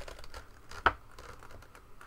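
Rustling and crinkling of a folded paper instruction sheet held open in both hands, with one sharp crackle a little under a second in.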